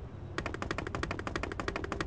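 A rapid, evenly spaced run of sharp bangs, about seventeen a second, starting about a third of a second in and lasting a little under two seconds.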